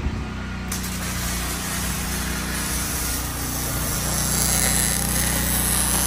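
Wire-feed (MIG) welder arc crackling and hissing steadily as a weld seam is run along a steel part, starting about a second in, over a steady low machine hum.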